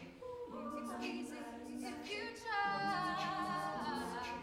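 All-female a cappella group singing long held chords in harmony, the voices moving together to a new chord about half a second in and again about two and a half seconds in.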